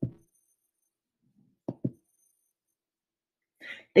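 Mostly quiet, broken by three brief soft thumps: one at the start and two close together near the two-second mark. A short breath follows just before a woman starts speaking at the very end.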